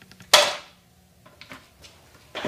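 A skateboard clacks sharply on the concrete garage floor once, about a third of a second in, followed by a few faint clicks.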